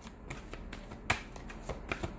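A deck of tarot cards being shuffled by hand: a run of soft, quick card clicks, with one sharper click about a second in.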